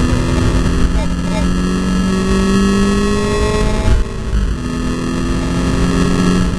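Volkswagen Scirocco Cup race car's turbocharged four-cylinder engine heard from inside the cabin, pulling with its pitch rising steadily. It drops at an upshift about four seconds in, then climbs again.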